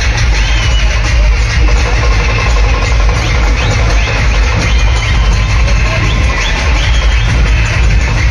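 A dhol-tasha troupe playing: many large dhol barrel drums beaten together in a loud, steady, driving rhythm.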